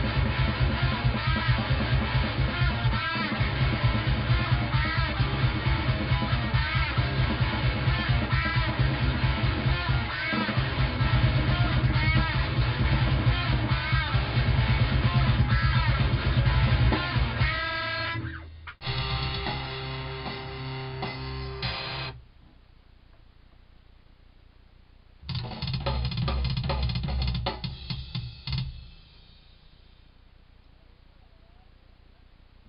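Fast, heavy technical death metal with distorted guitars and a drum kit, cutting off about 18 seconds in. Two short bursts of the same music follow, each stopping abruptly, with quiet gaps between, like studio playback or takes being started and stopped.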